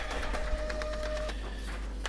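A printer running as it prints a sheet: a mechanical whir with rapid faint clicks and a brief steady whine partway through.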